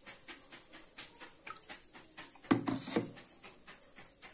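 Milky ground-bhang liquid being poured from a jug through a mesh tea strainer into a bowl, with a quick run of light ticks and two heavier knocks about two and a half and three seconds in.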